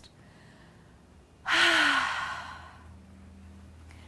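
A woman's big exhaled sigh about one and a half seconds in, breathy, with a faint voice falling in pitch under it, fading away over about a second: a cleansing breath after a set of crunches.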